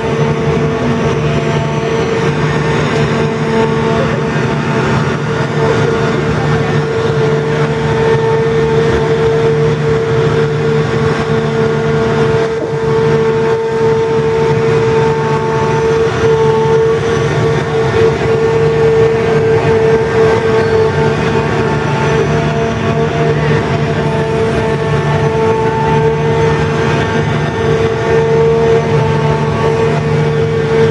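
The Grand Éléphant mechanical elephant's diesel engine and hydraulic drive running as it walks: a loud, steady machine drone with a constant hum.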